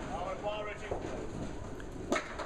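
Candlepin bowling alley sound: a low rumble with a few faint knocks of balls and pins, under indistinct background voices.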